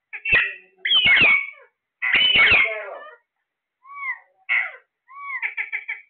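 Alexandrine parakeets calling: three loud, harsh screeches in the first three seconds, then two short arched whistles and a quick run of clipped chattering notes near the end.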